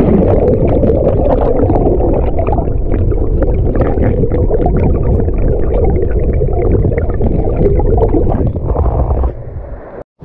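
Mountain stream water heard with the camera held underwater: a loud, dense, muffled rushing full of small crackles, dropping away near the end.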